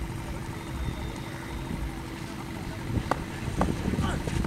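Outdoor ground ambience dominated by a steady, gusting low rumble of wind on the microphone, with two sharp knocks about three seconds in.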